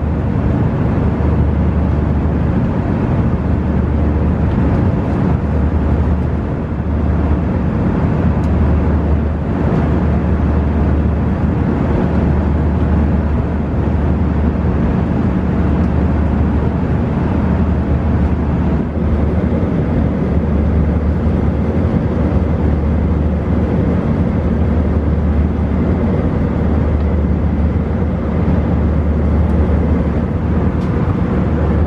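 Airbus A319 cabin noise in cruise: a steady rush of engine and airflow noise over a low drone that throbs slowly, swelling and fading every couple of seconds.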